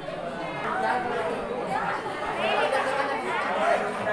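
Indistinct chatter of a group of people talking at once, with no single voice standing out.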